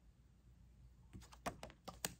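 Near silence for about a second, then a quick run of light clicks and taps, about six in under a second.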